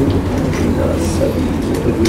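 Faint, indistinct murmured speech over a steady low room rumble.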